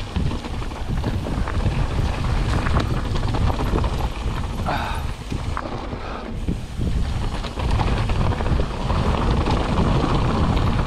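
Mountain bike descending a rocky dirt singletrack: wind buffeting the camera microphone over the rumble of tyres rolling on dirt and loose rock, with the bike's frequent small clicks and rattles. A brief high-pitched sound cuts in about five seconds in.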